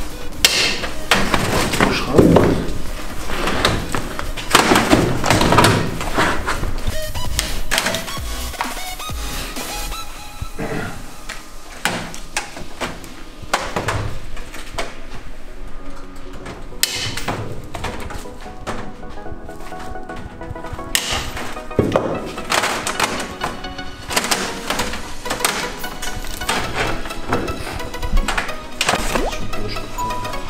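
Background music over repeated thunks, knocks and rattles of a steel wire-mesh cage being wrenched and pried off a cardboard box, partly with pliers.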